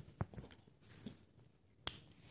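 A few faint taps and sharp clicks from two dogs moving about and nosing a rope toy on a hardwood floor, with one sharper click near the end.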